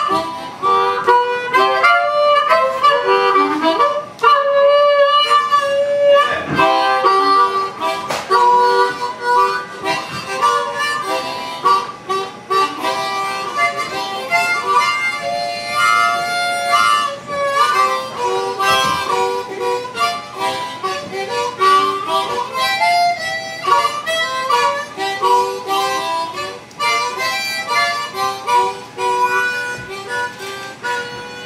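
Harmonica played live through a microphone, cupped in both hands: a run of short notes and chords, with a few held notes.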